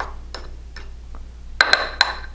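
Metal utensil scraping and tapping inside a ceramic mug of thick batter: a few light clicks, then a quick run of louder ringing clinks near the end.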